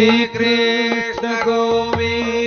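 Indian devotional bhajan: a singer holds one long note that swoops up at the start, over a steady keyboard accompaniment and evenly spaced hand-drum strokes.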